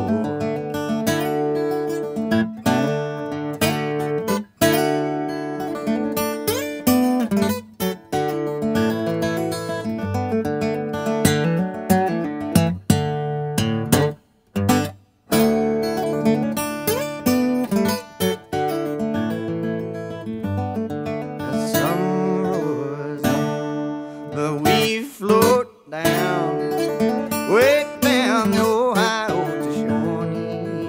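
Acoustic guitar playing an instrumental passage of a folk song, with plucked notes, some sliding in pitch, and two brief stops about halfway through.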